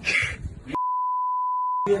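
A steady single-pitched censor bleep, about a second long, starting partway in; all other sound is cut out while it plays, as when a spoken word is bleeped out.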